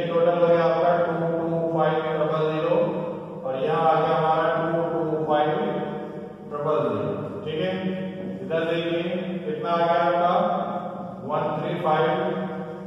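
A voice in long, evenly pitched phrases of a second or so each, with short breaks between them.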